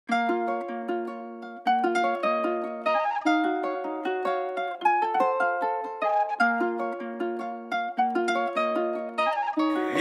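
Trap beat intro: a plucked guitar melody repeating a short phrase alone, without drums or bass.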